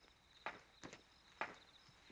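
Three footsteps on stone paving, about half a second apart, as a man walks away.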